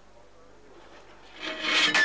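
A ceramic teapot being knocked over and shattering: a loud crash with a ringing clatter, starting about one and a half seconds in after a quiet stretch.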